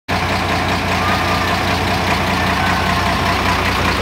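Mercedes-Benz 1721 bus's turbo-diesel engine idling steadily. Its KKK K27 turbocharger has a 'pente' cut into the turbine to make it whistle.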